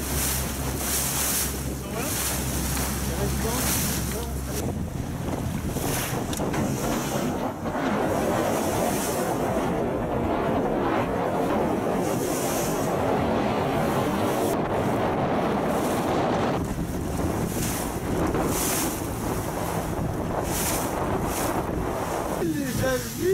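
Wind buffeting the microphone and the rush of choppy sea water around a small boat, with a boat motor humming low for the first few seconds.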